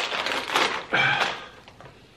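Crisp packet torn open and crinkled by hand, with a brief pitched sound about a second in. The rustling dies down after about a second and a half.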